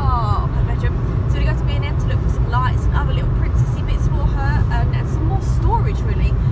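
Steady low rumble of road and engine noise inside a moving car's cabin, with bits of voice over it.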